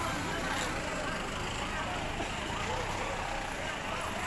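Indistinct distant voices over a steady low background rumble.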